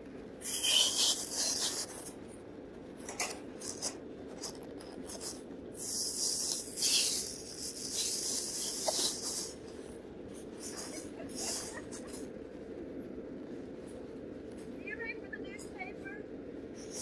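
Plastic bags rustling in a few bursts as food containers are packed into a bike basket.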